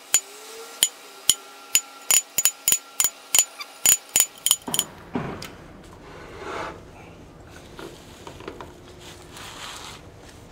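A hammer tapping a center punch into steel, about sixteen sharp ringing strikes in quick succession over the first five seconds. After that come quieter knocks and rubbing as a magnetic drill is set down and positioned on the metal table.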